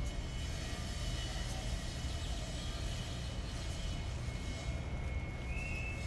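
A steady low outdoor background rumble, with a faint high whistle shortly before the end.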